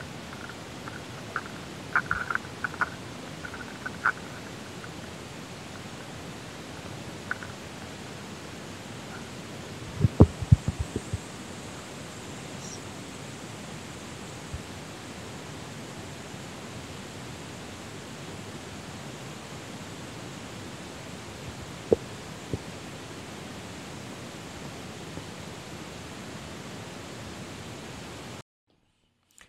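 Steady rushing noise of wind on the camera microphone and tyres rolling over a dirt trail as a gravel bike is ridden, with a cluster of loud low thumps about ten seconds in as the bike jolts over bumps, and a few sharp clicks.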